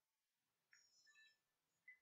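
Near silence, with a faint, short electronic beep from the Apeman action camera a little under a second in, as its power button is pressed to switch it off.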